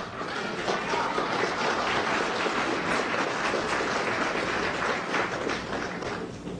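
Audience applauding, a steady dense clapping that tapers off near the end.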